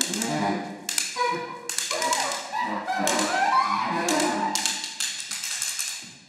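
A series of sharp taps on a hard surface, irregularly spaced about half a second to a second apart, each with a short ringing decay, over some faint wavering pitched tones.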